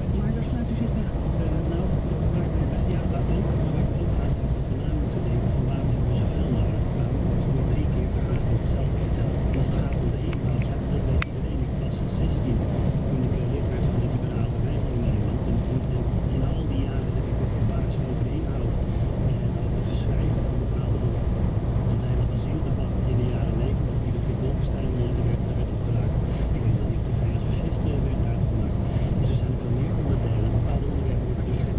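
Truck engine and road noise heard from inside the cab while driving, a steady low drone.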